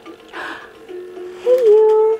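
A simple electronic tune from a baby swing, in held notes, with a louder note near the end that bends up and settles.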